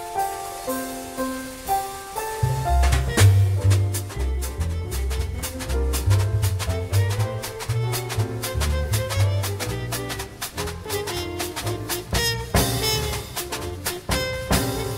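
Live small-group jazz. A piano plays alone at first. About two and a half seconds in, a double bass walking and a drum kit with cymbals come in, and the band swings.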